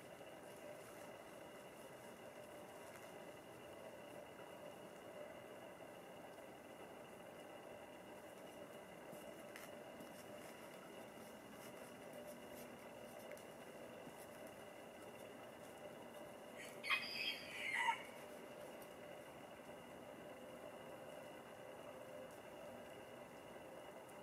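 A rooster crowing once, a single call of about a second, a little past two-thirds of the way through; otherwise only a faint steady background.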